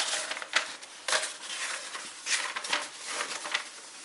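An old roll of stiff paper being lifted from its cardboard box and unrolled by hand: irregular rustling and crackling with small sharp clicks and knocks.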